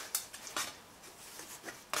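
A few light clinks and rustles as a titanium camping pot (Alpkit MightyPot) is handled and drawn out of its drawcord stuff sack.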